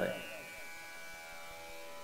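A faint, steady buzzing hum made of several held tones, with no change through the pause in speech.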